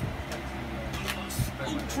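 Trading cards being handled on a playmat: a few quick taps and rustles as cards are picked up and set down, over a steady low hum.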